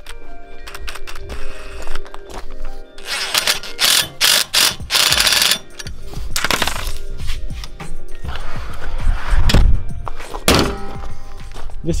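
Background music, with several short bursts of a cordless impact driver running a few seconds in.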